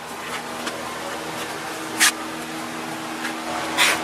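Plastic spreader scraping Bondo body filler across a car's metal quarter panel in short strokes, with two sharper swipes, one about two seconds in and one near the end. A steady low hum runs underneath.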